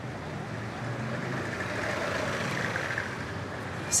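City street traffic noise, a steady wash of passing vehicles that grows a little louder after the first second.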